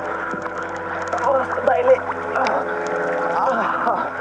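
A woman's wordless vocal sounds and water sloshing around a swimmer close to the microphone, over steady sustained background tones.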